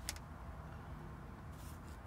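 Faint handling of RCA patch cables and plugs around a car amplifier: one sharp click just after the start and light rustling near the end, over a low steady hum.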